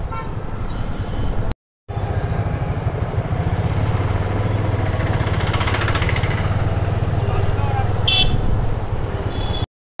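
Motorcycle riding in town traffic: a steady low engine rumble with road and wind noise, and a brief high-pitched horn beep about eight seconds in.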